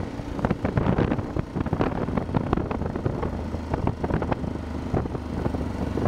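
Motorcycle engine running steadily at low road speed, with wind rumbling and crackling on the microphone.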